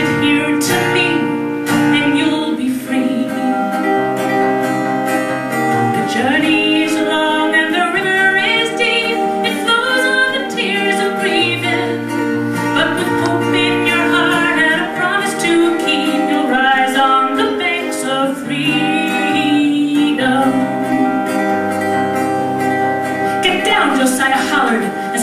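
A woman singing a folk ballad, accompanying herself on a strummed acoustic guitar.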